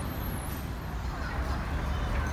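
Steady city street traffic noise: passing vehicles with a low, even sound, and voices in the background.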